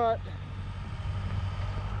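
A nearby engine idling, a steady low rumble that carries on after the last spoken word in the first moment.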